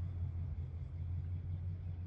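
A steady low hum with a faint background hiss.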